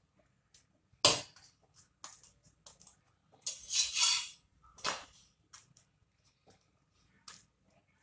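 Stainless-steel slotted spatula clacking and scraping on a metal tawa as a bajra roti is flipped and pressed down while it cooks. A sharp clack comes about a second in, a short scrape just before four seconds, another clack near five seconds, and a few light taps between them.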